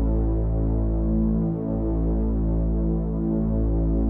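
Ambient meditation music: a low synthesized drone of held tones that swell and pulse slowly.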